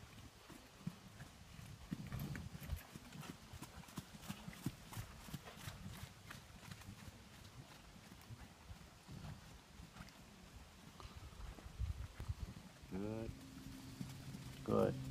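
Horses' hoofbeats on the sand arena footing: a faint, irregular run of quick thuds and clicks, thickest in the first half.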